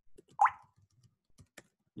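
Light keystrokes on a computer keyboard, a few soft clicks spread out, with one louder short pop that rises in pitch about half a second in.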